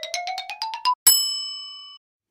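Channel-logo sound effect: a rapid run of short ticking notes rising in pitch, then a single bright bell-like ding about a second in that rings and fades away.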